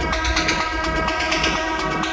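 Techno DJ mix: a held, horn-like synth chord over a steady ticking hi-hat pattern, with only a light bass underneath.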